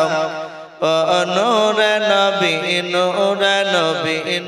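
A man's voice chanting a devotional melody into a microphone, with long held notes that bend up and down in pitch. The voice breaks off briefly near the start, then comes back and carries on.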